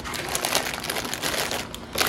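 Plastic and foil snack wrappers crinkling as packaged snacks are handled and pushed into a clear plastic bin, the crinkling dying down near the end.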